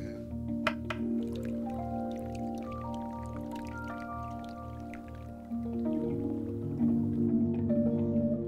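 Background music: sustained synth chords over a pulsing low bass, changing chord and growing louder about five and a half seconds in. Faint water drips sound beneath it.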